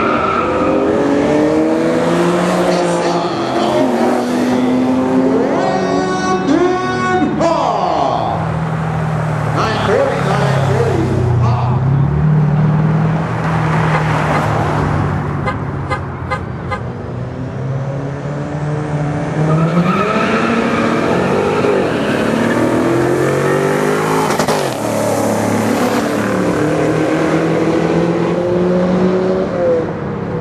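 Car engines running hard on a drag strip: several rising runs of engine pitch that drop back at gear changes, with bursts of sharp crackling clicks. Later another engine winds up again close by.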